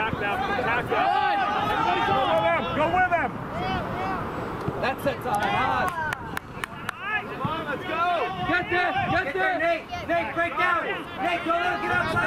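Overlapping shouts and chatter of rugby players and spectators, too indistinct to make out, with a few short sharp knocks or claps in the middle.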